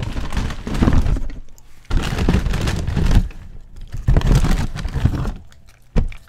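Loud crunching of a crisp fried Quesalupa shell being chewed close to the microphone, in three bursts about a second apart.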